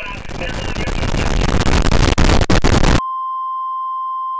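A loud static-like hiss swells over about three seconds, with a few crackles near its end, then cuts suddenly to a steady, pure test-tone beep of the kind played with colour bars.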